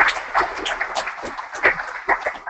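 Audience applause thinning out into scattered individual claps at the end of a talk.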